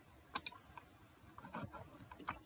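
Faint computer clicks: a quick pair about half a second in, then a few softer ticks, as the presentation is advanced to the next slide.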